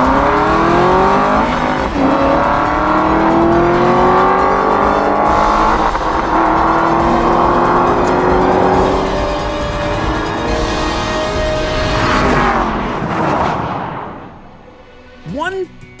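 Two sports cars, a 2010 Aston Martin V8 Vantage and a 2023 Nissan Z twin-turbo V6 with a six-speed manual, accelerating flat out side by side in a quarter-mile drag race. Engine pitch climbs steadily through each gear, drops at every upshift, and the sound fades away near the end as the cars pull off.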